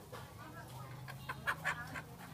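Chickens clucking, a quick run of short clucks in the second half.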